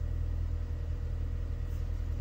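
Steady low rumble of a car with its engine running, heard from inside the cabin.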